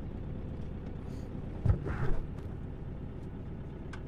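Steady low rumble of a camper van driving, heard from inside the cabin: engine and tyre noise, with two short thumps about a second and three quarters and two seconds in.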